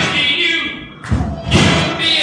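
Live rock band recording with a performer's voice, broken about a second in by two heavy drum thumps about half a second apart.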